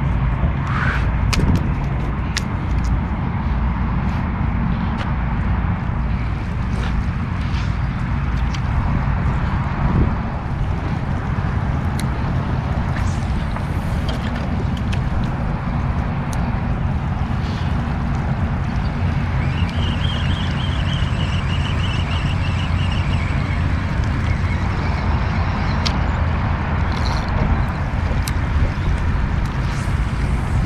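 Wind buffeting an action-camera microphone: a steady low rumble, with scattered small clicks and knocks from handling, and a brief high, fluttering whir about two-thirds of the way through.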